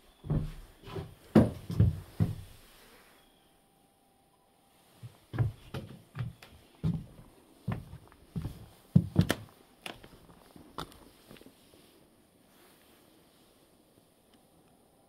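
Footsteps on wooden floorboards, hollow thumps from the planks: a cluster in the first couple of seconds, a short pause, then steady steps about every half second that die away near the end.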